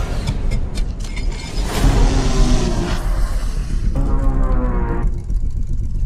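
Action-film trailer soundtrack: music mixed with car engine sound over a steady deep rumble.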